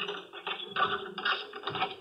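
Radio-drama sound effect of a key working a front-door lock: a run of quick metallic clicks and rattles as the key turns and the door is unlocked.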